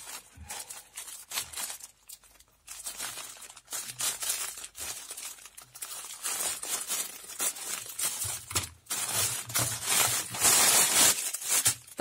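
Grey plastic courier mailer bag crinkling and rustling as it is handled and cut open with scissors, then torn, with the loudest crinkling near the end.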